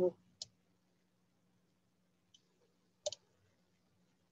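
Computer mouse clicks as a rectangle is dragged out with a drawing tool: a single click just under half a second in, a faint one a little past two seconds, and a sharper double click about three seconds in.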